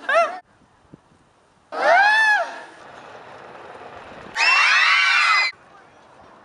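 Wordless shouted calls: a man's voice yells briefly, then gives a longer call that rises and falls. Several voices then yell together for about a second near the end.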